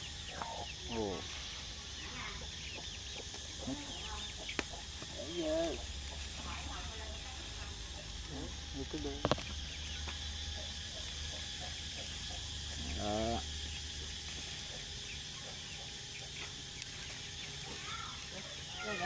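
Chickens clucking now and then, over a steady high hum, with a couple of sharp clicks.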